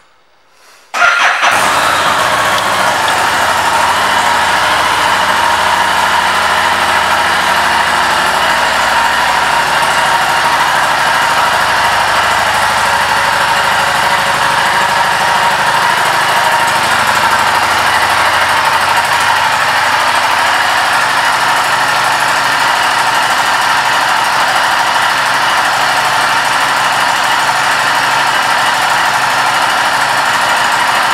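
2019 Harley-Davidson Street 500's liquid-cooled V-twin engine starting about a second in, catching at once and then idling steadily.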